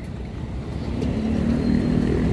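Small motorbike engine approaching and growing louder over a steady rumble of city street traffic.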